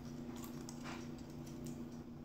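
Faint crinkling and ticking of a small foil wrapper being unwrapped by hand, a few soft rustles, over a steady low hum.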